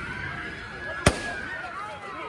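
A single sharp bang about halfway through, with a crowd shouting and yelling behind it.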